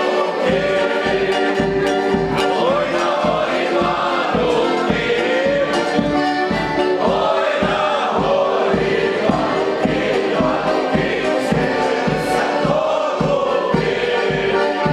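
Live Ukrainian folk song played by a small wedding band of button accordion, saxophone and drums over a steady beat, with voices singing.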